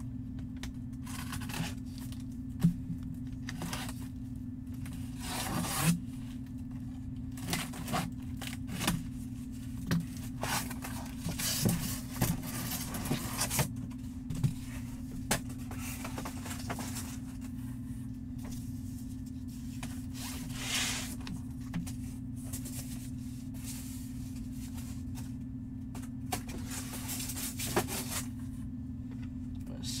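Cardboard packaging being scraped, torn and pulled open by hand in irregular rustles and scrapes, as a large photo is unboxed from its cardboard and plastic sleeve, over a steady low hum.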